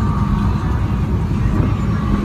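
Engine of a lifted mud-bog truck on giant tractor tyres, idling with a loud, steady low rumble.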